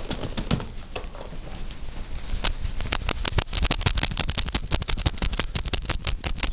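Rapid, irregular knocking and rattling from a body shaking with Parkinsonian tremor, with the deep brain stimulator switched off. The clicks are sparse at first, then from about three seconds in they come in a dense run of about five or six a second.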